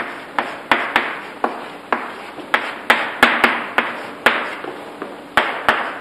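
Chalk writing on a blackboard: an irregular series of sharp taps and scratches as each stroke lands, about two to three a second.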